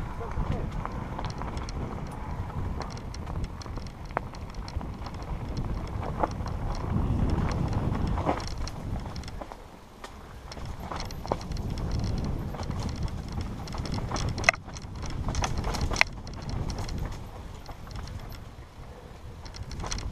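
Mountain bike riding down a dirt singletrack, heard from the rider: wind rumble on the microphone and tyre noise over the trail. The bike rattles and clicks over the bumps, with two sharp knocks about three-quarters of the way through.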